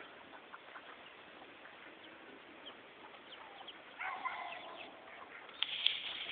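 A gamefowl rooster crowing once, about four seconds in, with faint chirps of other birds throughout. There are a couple of sharp knocks near the end.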